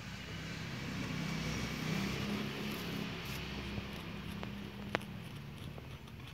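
A passing motor vehicle's engine hum, swelling to a peak about two seconds in and fading away, with two light clicks near the end.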